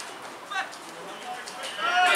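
Voices of players and spectators at a Gaelic football match: faint calls at first, then a loud shout rising near the end. A single short knock comes about half a second in.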